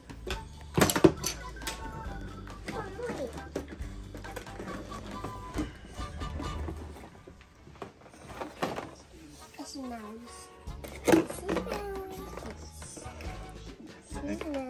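Plastic toy figures and their packaging being handled, with a sharp knock about a second in and another near the end, amid children's voices and background music.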